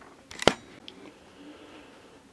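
A single sharp knock about half a second in, with a few faint handling sounds after it, as a squeegee and black ink are set into a wooden-framed screen-printing screen.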